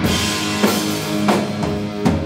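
Heavy metal band playing live: electric bass and electric guitar over a drum kit, with a drum strike about every two thirds of a second.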